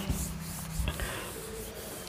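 Chalkboard duster rubbing across a chalkboard, wiping chalk writing off in continuous strokes, with a couple of light knocks about a second in.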